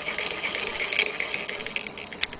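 Hand-cranked Singer Model 28K vibrating-shuttle sewing machine running, its bobbin winder spinning a bobbin of thread against the handwheel: a fast, dense mechanical clatter. It winds down to a few separate clicks near the end.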